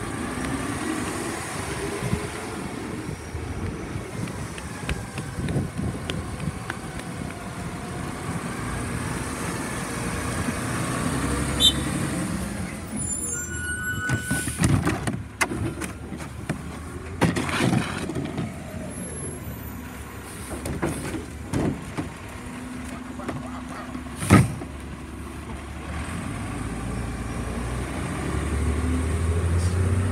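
Mack LEU rear-loader garbage truck's diesel engine running, its pitch rising and falling, with scattered knocks and clatter of bins being handled and one loud bang about three-quarters of the way through. The engine grows louder near the end as the truck pulls away.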